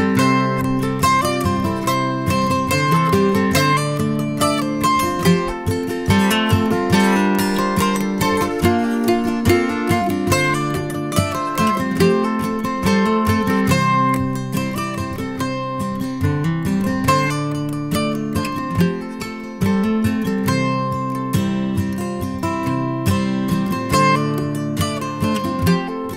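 Acoustic guitar strumming and mandolin picking together in an instrumental passage of a country song, with no singing.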